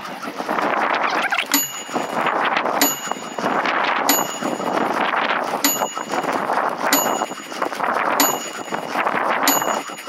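A bright ding sound effect, seven times at even intervals of about a second and a quarter, marking each lap on the counter. It sounds over a steady rush of wind and tyre noise from the bike rolling round the pump track.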